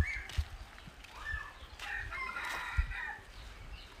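A rooster crowing once, about two seconds in, lasting about a second, with scattered low thumps of footsteps on a dirt path.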